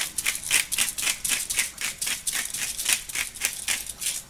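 Disposable black peppercorn grinder twisted by hand, grinding peppercorns with a rapid run of gritty clicks, about five or six a second.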